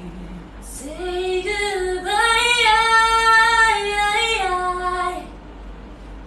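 A high singing voice sings a short phrase of held notes: it glides up about a second in, steps higher, then steps back down and stops shortly before the end.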